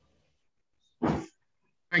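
Silence broken about a second in by one short cough from a man on the call; a man's voice starts right at the end.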